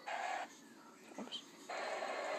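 Snatches of a wrestling broadcast's audio played through a laptop, cutting in and out abruptly as the YouTube video is skipped through: a short burst at the start, a brief flick in the middle, and sound resuming near the end.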